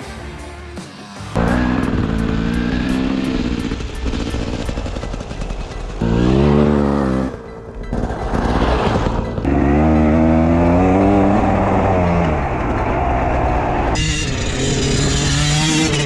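Motocross dirt bike engine revving in repeated bursts, its pitch climbing and dropping with the throttle, loud from about a second in; background music under the opening moments.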